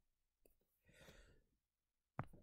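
Near silence with one faint breath from the narrator, about a second in.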